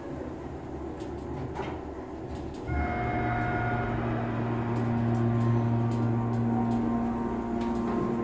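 Elevator car doors finishing their slide shut. About two and a half seconds in, the hydraulic elevator's pump unit starts with a sudden jump in level and runs on with a steady hum and whine as the car rises.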